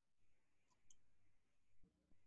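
Near silence: room tone with a faint computer mouse click just before a second in.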